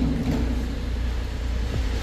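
Steady low rumble under an even hiss: the background noise of a working fish-market floor, with no single sound of the fish handling standing out.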